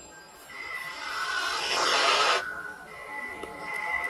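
Opening of a music video's soundtrack: a swelling whoosh that builds and cuts off abruptly about two and a half seconds in, over a thin steady high tone that carries on afterwards.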